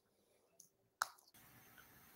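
Near silence on a video-call line, broken by a single short click about a second in. After the click a faint steady hiss comes up, as another participant's microphone opens.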